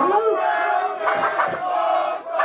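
A group of men shouting and chanting together, overlapping hype call-outs in the intro of a hip-hop track.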